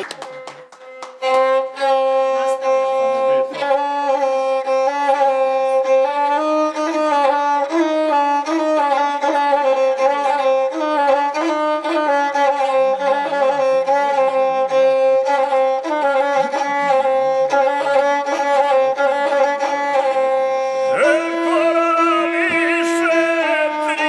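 Gusle, the single-string bowed Serbian folk fiddle, playing an instrumental melody over a steadily held note. This is the guslar's opening before the epic song begins.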